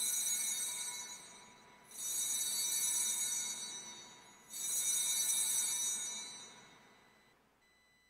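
Altar bells (sanctus bells) rung at the elevation of the host at the consecration: three bright, high rings about two and a half seconds apart, each dying away over a second or two.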